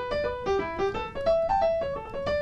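Piano playing a single-line right-hand arpeggio phrase over a II–V–I sequence in D major: a quick run of separate notes, several a second, climbing and falling in pitch.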